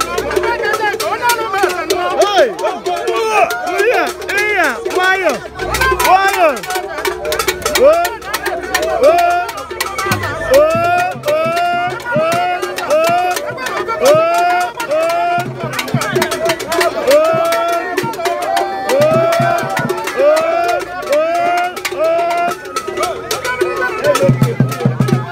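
Traditional masquerade music with dense percussion clicks and knocks, over a line of repeated rising-and-falling pitched calls that recur about once a second.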